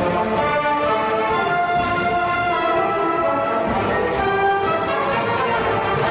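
Orchestral music with brass, playing steadily as a soundtrack.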